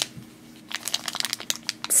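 Foil blind bag crinkling in short crackles as fingers twist and tug at it, the bag refusing to tear open.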